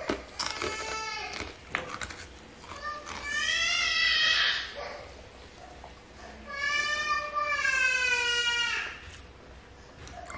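A cat meowing repeatedly, with two long drawn-out meows about three and seven seconds in, each falling slowly in pitch.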